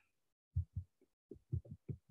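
A series of faint, short, irregular low thumps, about seven in two seconds.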